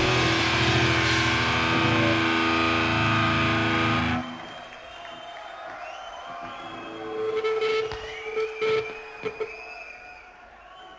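A live hardcore band playing loud, with distorted guitars and drums, until the song cuts off suddenly about four seconds in. The rest is quieter stage sound: a held guitar note and some sliding high tones, with a few short loud bursts near the end.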